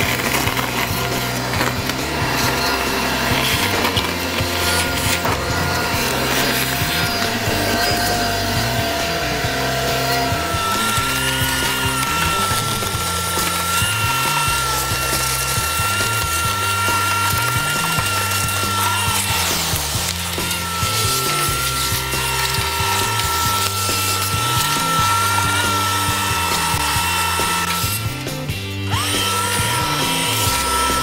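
Shop vacuum running with a steady high whine as its hose nozzle sucks leaves and dirt out of an air-conditioner condenser's base pan. Near the end the whine dips and then rises back up. Background music plays underneath.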